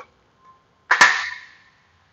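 A single sharp click about a second in, with a short ringing tail that fades within half a second.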